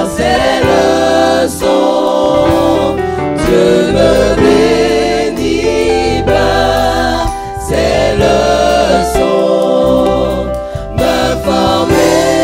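A mixed group of men's and women's voices singing a French gospel hymn in harmony through microphones.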